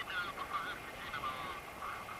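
A person's voice, indistinct, in short broken phrases over a steady hiss of wind.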